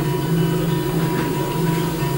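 Live band playing an instrumental passage, with a guitar holding sustained notes over a steady low drone, heard from the audience.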